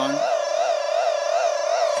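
Electronic power-on sound of the Captain Power Power On Energizer toy: a loud, continuous high electronic tone warbling quickly and evenly, which the reviewer calls a very annoying noise.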